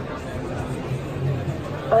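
Background chatter of a crowd in a busy trade-show hall: many indistinct voices at once, with no single speaker standing out.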